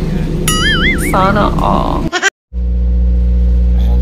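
An animal's bleating call with a quivering, wavering pitch over background music, about half a second to two seconds in. After a brief dropout, a steady low hum takes over.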